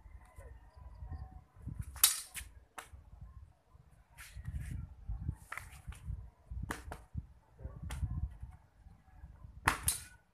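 Long two-handed blades striking each other in an eskrima partner drill: about ten sharp, irregular clacks, the loudest about two seconds in and a quick pair near the end, over a low rumble.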